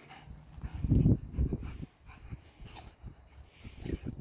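Two dogs, a Great Pyrenees and a pyredoodle, play-fighting on sand: dog vocal sounds and scuffling, loudest in a low burst about a second in.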